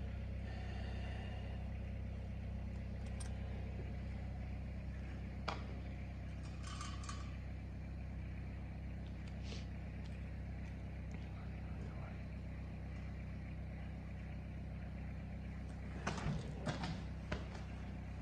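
A steady low hum throughout, with a few faint short clicks and a brief cluster of small rustles near the end.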